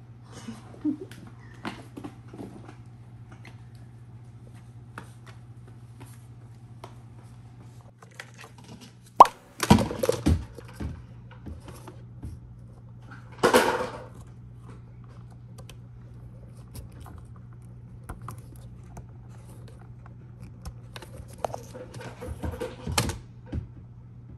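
Scattered knocks and clicks of hard plastic as a battery-powered ride-on toy car is handled and its charger plug is fitted, the loudest a sharp click about nine seconds in, with clattering soon after and again near the end. A steady low hum runs underneath.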